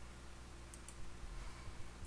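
Two faint quick clicks, close together, from a computer mouse button pressed to advance a presentation slide, over quiet room tone with a low electrical hum.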